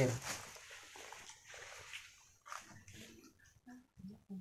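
A woman's voice breaks off at the start, then faint, scattered voice sounds and small noises.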